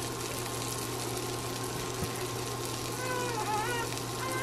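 Sausage patties sizzling steadily in a frying pan, over a low steady hum. A faint, wavering high call comes in about three seconds in.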